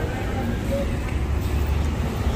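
City street ambience: a steady low rumble of road traffic with faint voices of passers-by.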